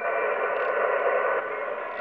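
Shortwave receiver audio from a Yaesu FT-991 tuned to the 15 m band in CW mode: steady band hiss and static with a few faint steady tones, heard as its digital noise reduction (DNR) is switched on.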